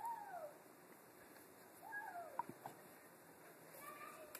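An animal calling twice, about two seconds apart. Each call is short and rises then falls in pitch, and a few light clicks follow the second.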